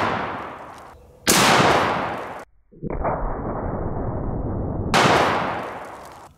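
AK-47 rifle firing 7.62x39 rounds: the echo of one shot is fading at the start, a second sharp shot comes about a second in, and a third about five seconds in, each trailing off in a long echo. Between the second and third shots there are about two seconds of dull, muffled rumble.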